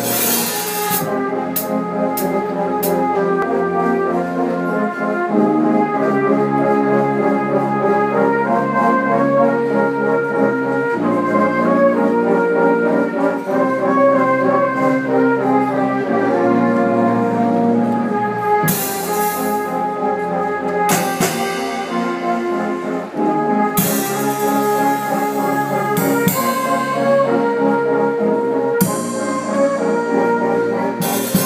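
Fanfare band (brass with tubas, euphoniums and mallet percussion) playing full sustained chords that change every second or two. Several percussion crashes ring out in the second half.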